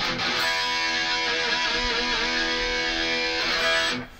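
Electric guitar played through a Line 6 Pod Go on its 'Revvy Red' distorted amp patch and heard through a small monitor speaker. A single distorted chord rings out and is held, with a slight waver in pitch in the middle, and it is cut off just before the end.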